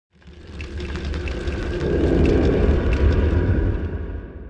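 Deep rumbling sound effect, like rolling thunder, under an intro title sequence. It swells up over the first two seconds or so and begins to fade near the end.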